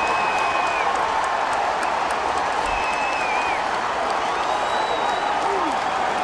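Baseball stadium crowd after a go-ahead home run by the visiting team: a steady din of many voices with some applause, and a few short high tones over it.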